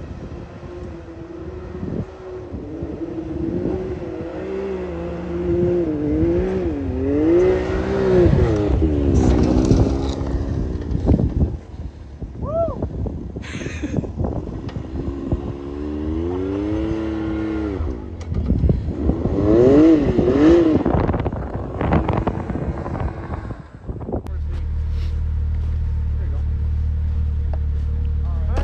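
Side-by-side UTV engines revving in deep snow, the pitch rising and falling in several runs with short rev blips between. Near the end the engine settles into a steady low drone.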